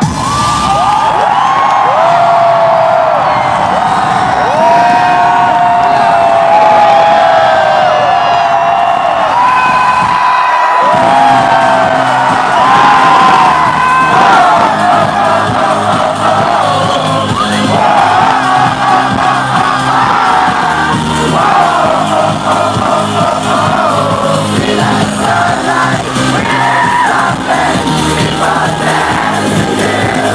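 A large concert crowd screaming and whooping. About eleven seconds in, loud amplified dance-pop music with a heavy bass beat starts, and the crowd keeps cheering over it.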